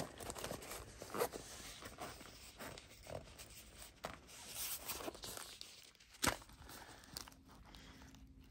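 Rustling and handling noise as a small fabric zippered pouch is unzipped and opened, with scattered light clicks and one sharper click about six seconds in.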